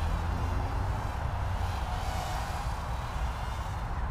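Faint, wavering high whine of the Eachine EX120 micro hexacopter's six brushed motors and propellers in flight, over a steady low rumble of wind on the microphone.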